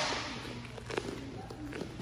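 Bare feet scuffing and padding on a foam wrestling mat as two grapplers circle and tie up, with a few light taps about a second in. The echo of a shouted start command dies away in the large gym.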